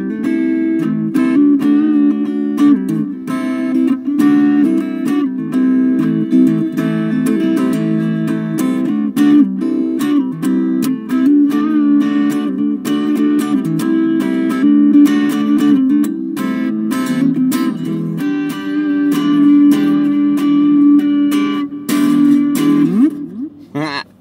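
Epiphone Les Paul electric guitar with double humbuckers, played continuously through a small battery-powered Blackstar 3-watt travel amp. It ends near the end with a sliding note.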